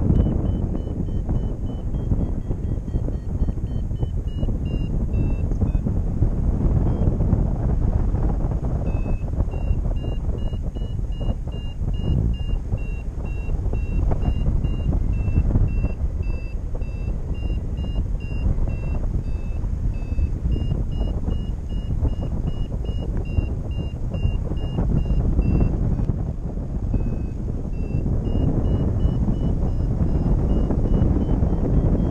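Wind buffeting the microphone in flight, the loudest sound throughout, with a paragliding variometer beeping in short high tones that step up and down in pitch, signalling that the glider is climbing in rising air.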